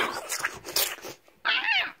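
Harsh, breathy shrieks, then a short, shrill, wavering cry about one and a half seconds in.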